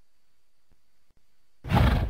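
Short, deep animal roar sound effect starting near the end, after a quiet stretch of faint background hiss with a thin steady high tone.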